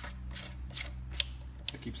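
A few light clicks and taps from a plastic battery-powered LED puck light being handled and turned in the hand, over a steady low hum.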